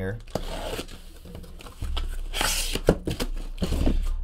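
Box cutter slitting the packing tape along a cardboard case's seam, then the tape ripping loose in one loud, short tear about two and a half seconds in, followed by a few clicks as the cardboard flaps are handled.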